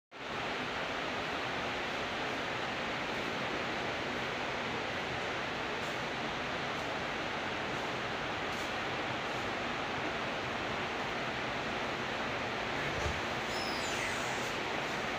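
Steady, even hiss with no distinct events, and a faint low thump near the end.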